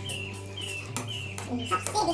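A bird calling in a quick string of short clucking notes, each falling in pitch, about two or three a second, over background music.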